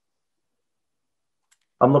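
Near silence between speakers on a video call, broken by one faint click about one and a half seconds in; a voice starts speaking just before the end.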